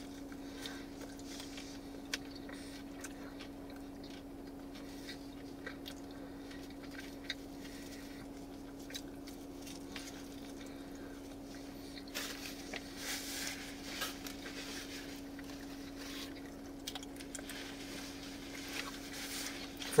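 A person quietly chewing a bite of brick-oven pepperoni pizza, with faint mouth noises and a few louder crunchy bits about twelve to fifteen seconds in, over a steady low hum.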